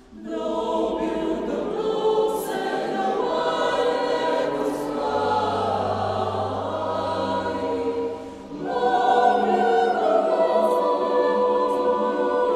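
Mixed a cappella choir singing. The voices come in together after a short pause, break off briefly a little past eight seconds, then come back louder.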